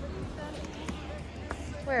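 Faint voices over a steady low rumble, with a short spoken 'Where?' near the end.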